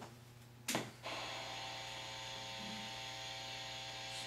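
A sharp click, then a steady electrical hum with a faint whine that starts about a second in and holds level, as of a device switched on.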